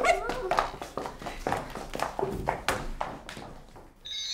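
Irregular light clicks and knocks, about ten of them, growing fainter toward the end: footsteps of heeled shoes on a hard floor and plates and glasses being picked up. A brief voice sound at the start.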